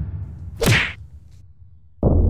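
Edited whoosh sound effect from a title sequence: one quick swoosh about two-thirds of a second in, falling in pitch, over a low rumble that fades away. A second low rumble cuts in suddenly at the very end.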